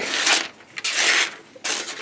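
Aiorosu Tornado folding knife's 440C steel blade slicing through phone book paper in three strokes, each a short papery hiss, as a sharpness test.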